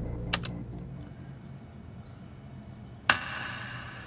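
Two computer keyboard key clicks shortly after the start. The last of the music dies away behind them, and about three seconds in a sudden ringing hit sounds and fades over about a second.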